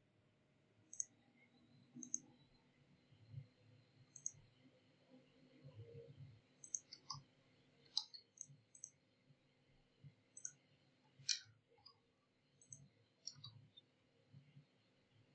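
Faint computer mouse button clicks, each a quick press-and-release double tick, about a dozen scattered irregularly over near silence.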